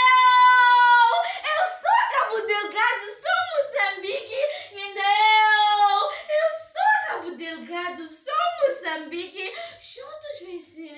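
A woman's high voice chanting loudly, with a long held note in the first second and another about five seconds in, between shorter rising and falling phrases.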